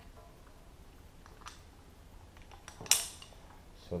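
Metal carabiner clinking against the climbing hardware as it is unclipped to bypass it: a few light clicks, then one sharp, ringing clink about three seconds in.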